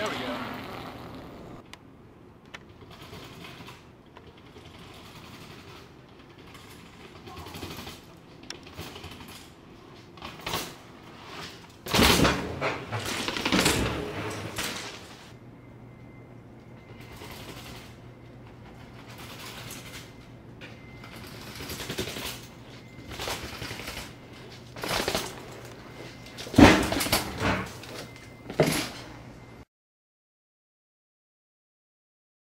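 Mountain bike riding on concrete paths and stairs: tyre noise over a low background, broken by several sharp knocks and thumps from drops and landings, the loudest about twelve seconds in and again near the end, with indistinct voices.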